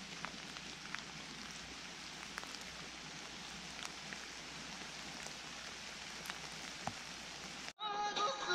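Steady rain falling, with scattered individual drops ticking sharply close by. The sound cuts off abruptly just before the end.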